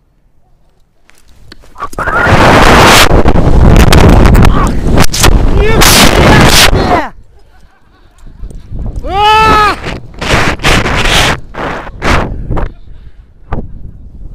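Wind rushing over a head-mounted action camera's microphone during a rope jump from a chimney: it starts about two seconds in and stays very loud for about five seconds of the fall. Then, as the jumper swings on the rope, come loud whooping yells and gusts of wind noise.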